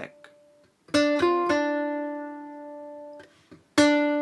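Kala ukulele played note by note: about a second in, a plucked note is followed by a quick higher note and a return to the first, which rings and fades. Another note is plucked near the end. This is the second fret of the C string going to the first fret of the E string and back.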